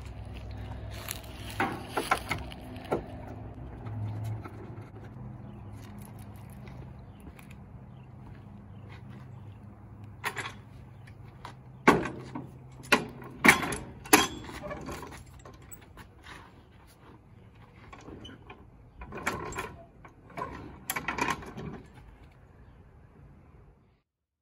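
Steel hydraulic floor jack clanking as it is rolled under a car and its long handle worked, with a run of sharp metal knocks in the middle and more clattering near the end.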